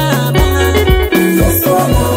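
Upbeat Swahili gospel song in an instrumental stretch without words: a steady drum beat, bass and keyboard-like tones.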